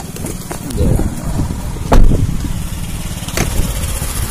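Car engine and road noise as heard from inside the cabin: a steady low rumble, with a couple of sharp knocks, the loudest about two seconds in.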